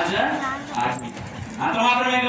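A man's loud preaching voice, with a short, high yelp-like call about half a second in.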